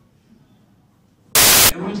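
A short, loud burst of static hiss, about a third of a second long, that starts and stops abruptly about one and a half seconds in, after a brief lull; a man's voice picks up again right after it.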